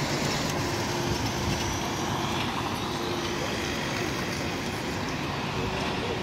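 Steady street noise of a busy city street: a continuous wash of traffic sound with no single event standing out.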